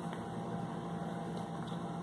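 Steady room tone: a constant low hum under a faint even hiss, with no distinct event.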